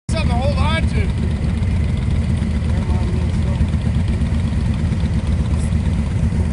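Cruiser motorcycle engine idling steadily, with a short stretch of voice in the first second.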